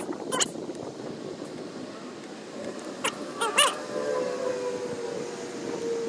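A few sharp clicks of wire terminals being handled and pushed together, one near the start and a cluster about halfway through. From about halfway on, a faint steady tone slowly drops in pitch in the background.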